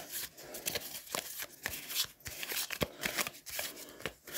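Deck of playing cards being shuffled by hand: a quiet run of short, irregular card flicks and slaps.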